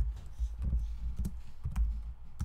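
Typing on a computer keyboard: a few irregularly spaced key presses, each a sharp click with a dull thud.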